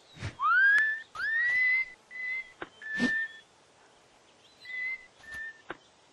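Cartoon character whistling: two notes that slide up and level off, then a few short, steady whistled notes, with a couple of soft thumps among them.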